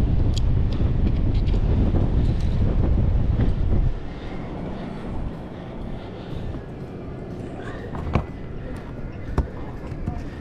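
Wind buffeting the microphone with a heavy low rumble, which cuts off suddenly about four seconds in. After that a quieter background follows, with a couple of sharp knocks near the end.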